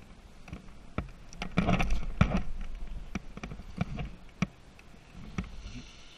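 Skis sliding over groomed snow as a skier gathers speed, with a louder scraping rush from about a second and a half to three seconds in. Scattered sharp clicks and knocks run through it.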